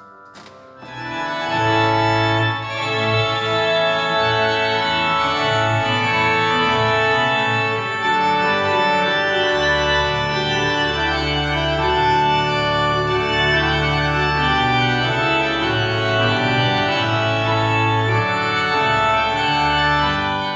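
Organ music playing held chords over a moving bass line, coming in about a second in.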